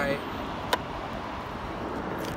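Steady rush of wind and road noise while riding an electric scooter at about 17 mph, with one sharp click about three-quarters of a second in.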